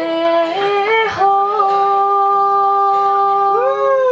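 A woman singing into a microphone, holding one long note for about two seconds, then sliding up and back down near the end.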